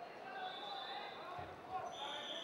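Wrestling-bout sound in a large hall: scattered voices calling out, and a dull thud near the end from the wrestlers' bodies and feet working on the mat.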